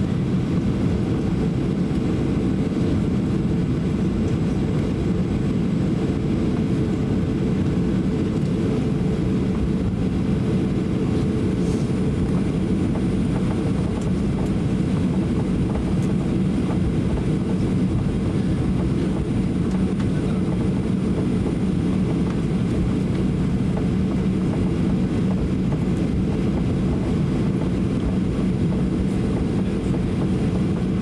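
Cabin noise of a Boeing 737-800 taxiing: its engines run at idle with a steady low hum and rumble, and a constant tone sits under it. The sound stays even throughout.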